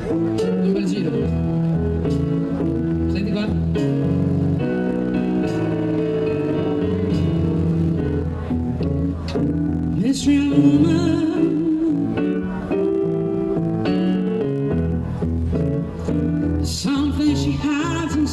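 A live band playing: electric keyboard, drum kit and a plucked string instrument. Cymbal crashes come about ten seconds in and again near the end.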